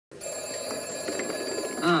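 Low background voices and room noise with a faint steady high-pitched whine, then a man's drawn-out "ah" near the end.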